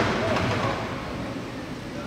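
Faint, indistinct voices over steady room noise in a large hall, getting slightly quieter toward the end.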